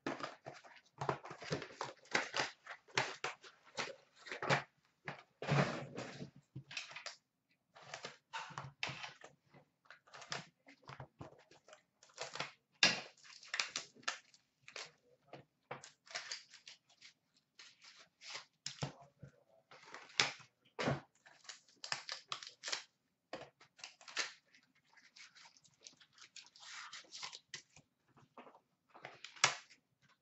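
Irregular rustling, crinkling and tearing of card packaging as a hockey card box is opened and its packs are taken out and handled. Scattered short clicks and scrapes of cardboard and cards run through it.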